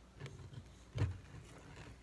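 Faint handling sounds as an antler is pressed into its socket on a cast elk sculpture, with one soft thump about a second in and a low steady hum beneath.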